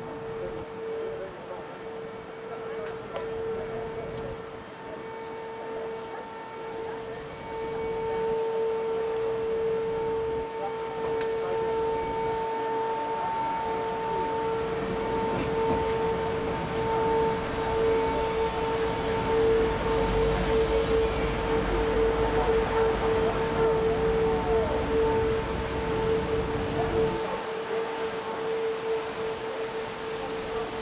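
A boat under way: a steady whine holding one pitch, with a fainter tone an octave above it, over the low rumble and rush of the hull moving through the water. The rumble grows louder about eight seconds in.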